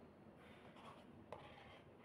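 Near silence with faint scraping and one light click about a second in: a plastic spoon working rice out of a paper takeout box.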